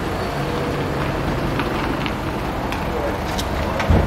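Steady outdoor traffic noise with a few light clicks, and a single thump near the end as the car's rear door and the loaded tree are handled.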